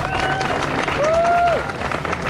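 Small crowd applauding with steady clapping, and two drawn-out cheering calls that each rise, hold and fall in pitch: one at the start and another about a second in.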